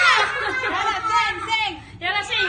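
Several people chattering excitedly over one another, with voices sweeping sharply up and down in pitch, dropping off briefly near the end.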